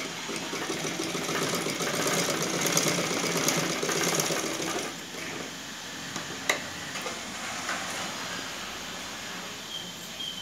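Black domestic straight-stitch sewing machine running as it stitches through layers of cloth, louder for the first few seconds and then quieter, with a single sharp click partway through.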